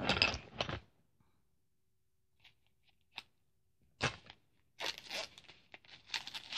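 Packaging on a pack of cards being torn open by hand: a loud rip in the first second, a few small clicks, then more tearing and rustling from about four seconds in.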